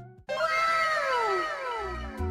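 A cat's single long meow, falling steadily in pitch, starting just after background music cuts off.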